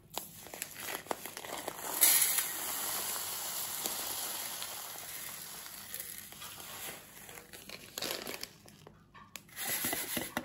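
Dry breadcrumbs pouring from a plastic bag onto a metal baking tray: a steady rustling hiss of crumbs with the bag crinkling, loudest about two seconds in, then tailing off. A few short rustles and clicks near the end.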